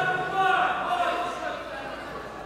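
Voices shouting from around the mat, with one long drawn-out call in the first second that fades away.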